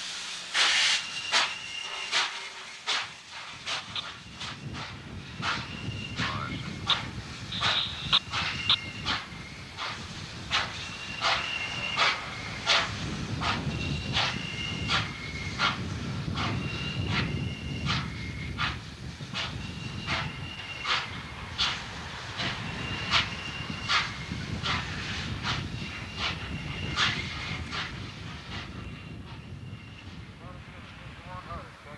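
Norfolk & Western J-class 611 steam locomotive at close range: its bell clanging about once a second with a ringing tone, over steam hissing. A low running rumble comes in about four seconds in as the engine moves.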